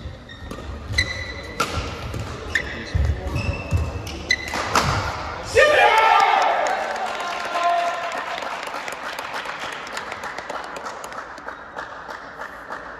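Badminton rally in a large hall: sharp racket strikes on the shuttlecock, shoes squeaking and thudding footsteps on the court. About halfway through the rally ends in a loud shout, then crowd cheering and clapping that slowly fades.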